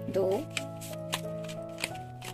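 A deck of large oracle cards being shuffled and handled, the card edges giving several sharp clicks and snaps, over soft sustained background music.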